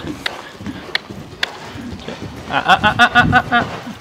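Racehorse cantering on a lunge line over a sand arena surface, its hoofbeats faint and soft. About two and a half seconds in, a fluttering, voice-like sound lasts about a second.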